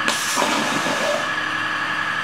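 A 60,000 PSI waterjet switched on in a short burst, its high-pressure stream hissing as it blasts into a Kevlar plate over ballistic gel. The hiss starts suddenly and is loudest for about the first half second, then eases to a steadier, quieter hiss, with a steady high whine underneath.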